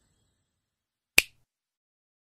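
A single sharp click about a second in, in otherwise near silence.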